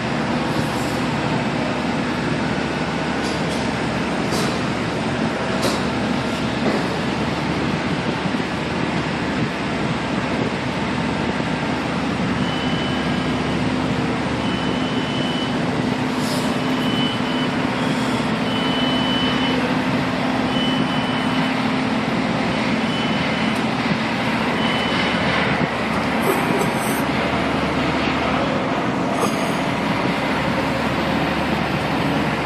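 Mobile crane diesel engines running steadily under load during a lift. A series of short high beeps, all at one pitch, sounds on and off for about twelve seconds in the middle.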